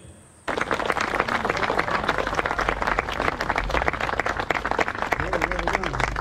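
A crowd clapping, starting suddenly about half a second in and going on steadily.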